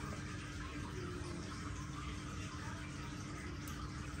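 Steady room noise: an even hiss with a faint low hum running under it, and no distinct sound from the piercing itself.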